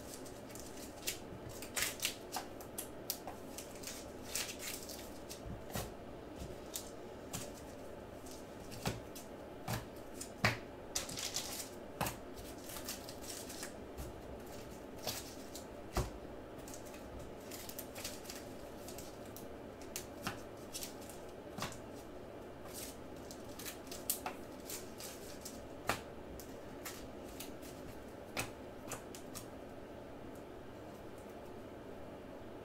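Trading cards in plastic sleeves being handled and sorted: irregular plastic clicks, taps and rustles as cards are slid through the fingers and set down in stacks.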